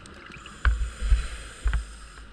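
Underwater breathing sound of a scuba diver's regulator: a steady hiss, with three loud low bursts of exhaled bubbles in the second half.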